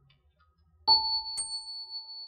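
A bell-like ding in the soundtrack music: a sudden strike about a second in that keeps ringing steadily, then a second, higher ping half a second later that dies away quickly.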